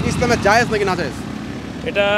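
A man's voice speaking Bengali briefly, then a steady low hum of street traffic.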